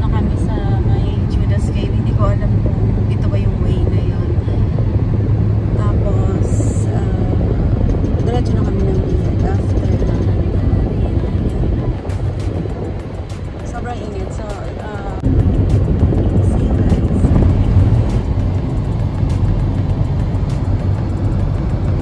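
Steady low rumble of road and engine noise inside a moving car's cabin, with indistinct voices and music under it. It grows louder about two-thirds of the way through.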